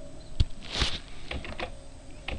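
Computer keyboard keys clicking: one sharp click about half a second in, then several lighter clicks, with a short hiss just after the first.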